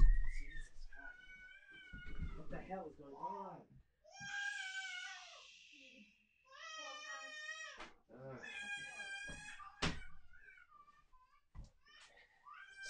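A baby screaming in a series of long, high, wavering cries, fainter than the nearby speech, with a couple of sharp knocks near the end.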